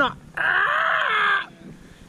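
A man vocally imitating trees creaking: one drawn-out creaky wail of about a second, slightly falling in pitch.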